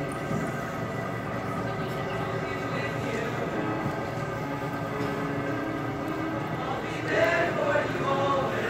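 Mixed high school show choir singing, voices holding long sustained notes, with a louder phrase near the end.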